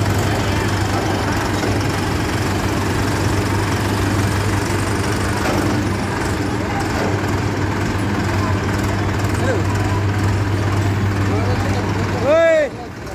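Diesel tractor engine idling steadily with a low, even hum, with voices in the background.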